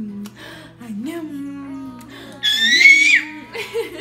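Background music with a stepping melody. About two and a half seconds in comes a toddler's loud, high-pitched squeal lasting about a second; it holds its pitch, then drops away at the end.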